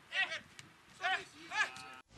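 A few short, high-pitched shouted calls in quick succession, each rising and falling in pitch.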